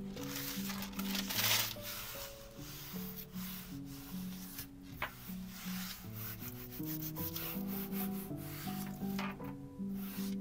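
Hands rubbing a sheet of wet strength tissue paper down onto a painted gel printing plate to transfer the print: a dry, papery swishing in uneven strokes, loudest about a second and a half in.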